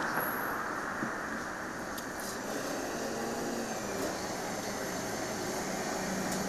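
City bus engine running steadily while the bus stands at a stop, an even, unbroken running noise.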